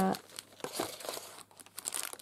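Clear cellophane packaging crinkling as it is handled, with scattered short rustles as plastic-wrapped packs are put back into a box.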